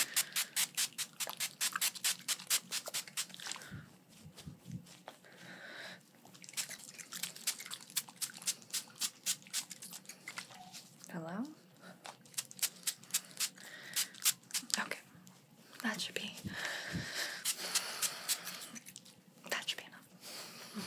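Small fine-mist spray bottle spritzed in quick runs of short sprays, several a second, in about four runs separated by short pauses.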